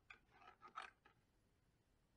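Near silence, with a few faint rustles and small clicks in the first second from wires being handled and fed into a plastic enclosure.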